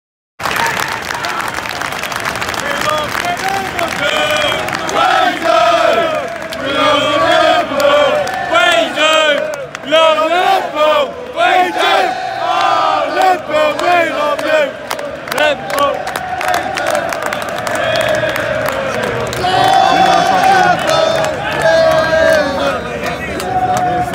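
Football crowd singing and chanting together in celebration, with loud close voices shouting among them. It cuts in abruptly about half a second in and carries on at full volume.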